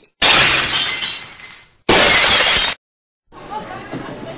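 Two loud shattering crashes: the first fades over about a second, and the second stops abruptly after less than a second.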